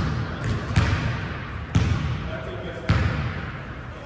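Basketball dribbled on a hardwood gym floor, a few bounces roughly a second apart, each echoing in the large hall.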